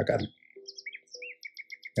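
A small bird chirping: a string of short, high notes that become a quick, even run near the end, after a brief spoken word at the start.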